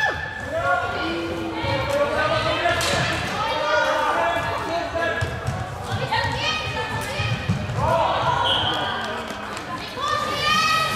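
Floorball players calling out to each other during play, with knocks of sticks, ball and footsteps on the court floor, echoing in a large sports hall.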